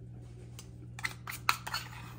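A few light clicks and scrapes of metal kitchen utensils against a cast iron skillet and a metal measuring cup, over a steady low hum.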